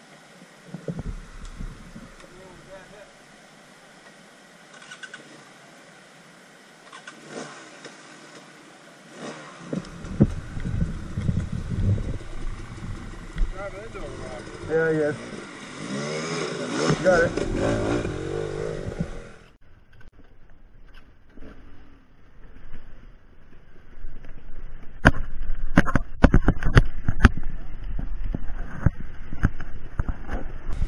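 Enduro dirt bike engine revving up and down as the bike splashes through a rocky creek. It cuts off abruptly about two-thirds of the way through, and near the end there is a run of loud knocks and thumps.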